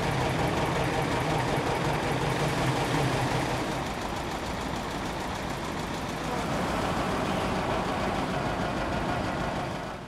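Tractor engine running steadily to drive a pump that sucks water out of a flooded well through a suction hose.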